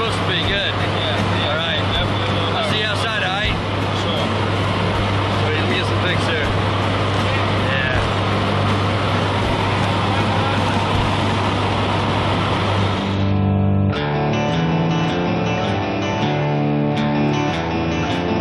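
Steady engine drone inside a jump plane's cabin, with faint voices in the first few seconds. About 13 seconds in it cuts sharply to background music with a strummed guitar.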